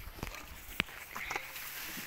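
A single sharp knock about a second in: a brick striking a car's cracked laminated windshield, which holds and does not break.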